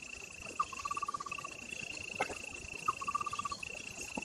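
Steady high-pitched insect buzz, with an animal call heard twice: a short upward note, then a quick run of pulses lasting under a second. A single sharp click about two seconds in.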